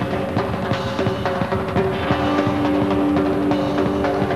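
Live rock band music with pounding drums and percussion hits; a held note comes in about two seconds in.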